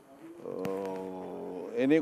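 A man's drawn-out hesitation sound, a single held note at a steady pitch lasting about a second and a half, before his speech picks up again near the end.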